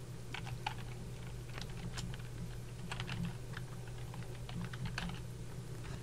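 Computer keyboard being typed on, a run of irregular keystrokes as an email address is entered, over a steady low hum.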